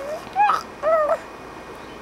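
A baby cooing: two short, high-pitched vocal sounds in quick succession in the first second, the second bending in pitch.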